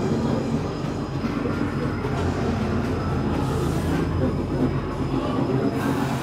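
Steady low rumbling drone from a haunted walk-through maze's ambient sound effects.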